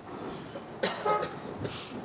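A person coughing once, a short loud cough in two quick pushes a little under a second in, over quiet room tone.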